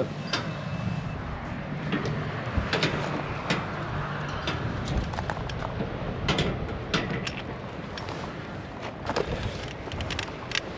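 Scattered clicks, knocks and rattles of an e-bike being wheeled out through a door and a metal turnstile gate, over a steady low outdoor background noise.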